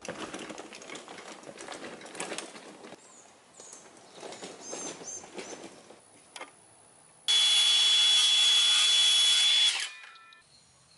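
A loaded garden cart rattling and clattering as it is pulled over a gravel path. About seven seconds in, a DeWalt cordless circular saw starts up loudly with a steady whine as it cuts a wooden board, running for about two and a half seconds before cutting off suddenly.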